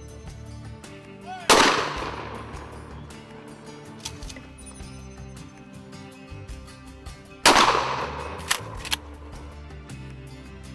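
Two shots from a Mossberg 500 12-gauge pump shotgun, about six seconds apart, each a sudden loud blast that rings out for about a second. Two shorter sharp cracks follow the second shot, over background music.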